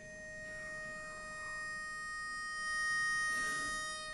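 Barbershop pitch pipe sounding one steady reedy note, held for about four seconds and growing a little louder before it stops: the starting pitch is being given to the chorus before the song.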